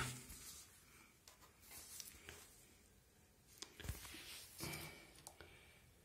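Near silence: room tone with a few faint, brief rustling noises.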